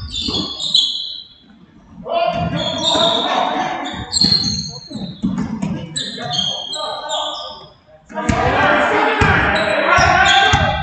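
A basketball is dribbled on a hardwood gym floor, its bounces ringing in the large hall, amid many short high squeaks from sneakers on the court and players' and coaches' voices calling out.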